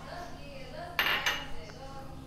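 A small glass bowl knocking once against a stainless steel mixing bowl, a sharp clink about a second in with a short ring, while baking powder is tipped out of it; a fainter tick follows.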